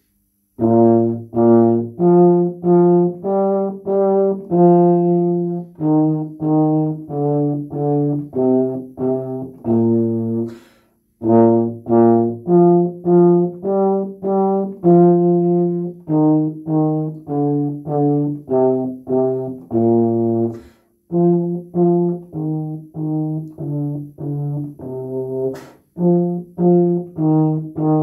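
Tenor tuba, a euphonium-sized three-valve brass horn, playing a simple well-known melody in short, separately tongued notes. The tune breaks off three times for short pauses, about ten seconds in, about twenty-one seconds in, and just before the end.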